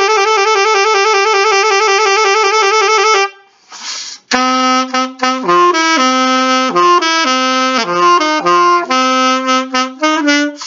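Solo alto saxophone: a long held note that wavers rapidly up and down, cut off about three seconds in, a quick breath, then a melodic line of shorter separate notes in a lower register.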